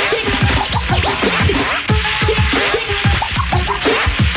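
Hip hop record with a DJ's turntable scratching over a steady drum beat with deep bass hits and no rapping.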